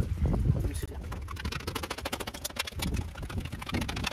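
A screwdriver stabbing drainage holes through the plastic of a potting-soil bag: a quick run of crackling pokes and plastic rustling.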